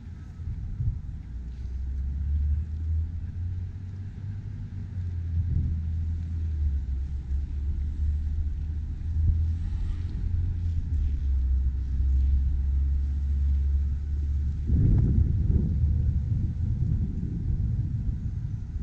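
Low rumble of wind buffeting the camera microphone, turning gustier and louder about three-quarters of the way through.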